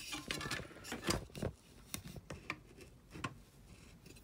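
Handling noise as a camera is moved and repositioned over a workbench: a string of irregular small clicks, knocks and rubbing, loudest about a second in.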